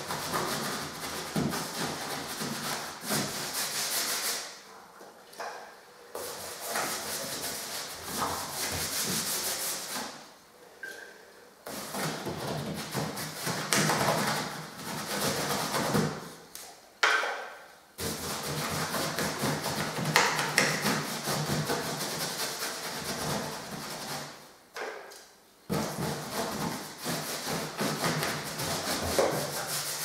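A paintbrush scrubbing diluted PVA onto rough, dusty bare plaster on a ceiling: scratchy brushing in stretches of a few seconds, broken by short pauses four times, when the brush leaves the surface.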